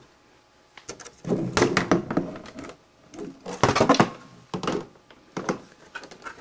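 Clear acrylic computer case being opened by hand: a series of plastic knocks and scrapes in several short clusters, with quiet gaps between them.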